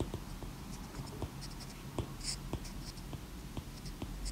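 Stylus writing on a tablet's glass screen: faint, irregular taps and light scratches as a word is handwritten.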